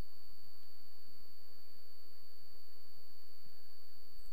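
Room tone of a screen recording: a steady hiss with a constant high-pitched electrical whine and a low hum, and no other sound.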